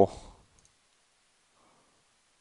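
The end of a man's drawn-out spoken word fades out right at the start, then near silence broken by a couple of faint computer mouse clicks.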